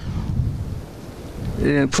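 Low rumble of wind buffeting a handheld microphone, with a man starting to speak near the end.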